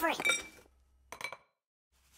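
Two light clinks about a second apart, each with a brief ringing tone, as a bowl and a sieve are set together.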